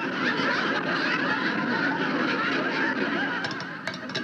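Audience laughter: a sustained wave of laughing that eases a little near the end.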